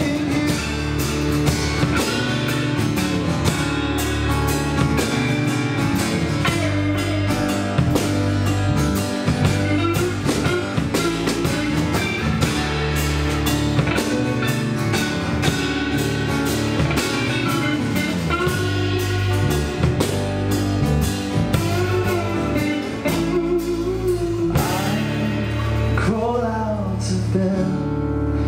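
Live band playing a blues-pop song without words: acoustic and electric guitars, electric bass and drum kit. About 24 seconds in, the drums drop out, leaving the guitars and bass.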